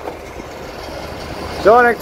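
Steady low rumble of distant engines, with a man's voice coming in near the end.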